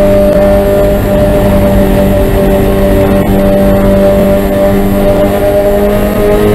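Spec Miata race car's four-cylinder engine running hard at high revs under load, heard from inside the car. The pitch holds steady, with wind and road rush underneath.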